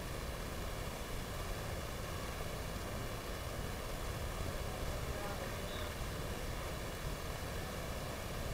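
Steady, noisy background ambience with faint, indistinct voices.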